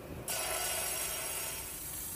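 Diamond-blade rock saw running on a West Texas agate. It starts abruptly about a quarter second in and goes on as a steady hiss.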